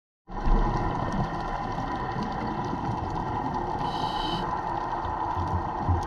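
Underwater sound heard through a camera housing on a coral reef: a steady mechanical drone with faint crackling clicks, and a brief high-pitched tone about four seconds in.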